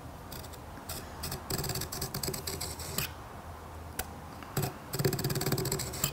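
Marking knife scribing lines across soft timber along a ruler: two scratchy strokes, one about a second and a half in and one near the end, with a few light clicks of the knife and ruler being set between them.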